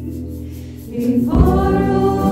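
Live worship band: a held chord dies down, then about a second in the singers start a new line together, with acoustic guitar, keyboard and drums coming back in full.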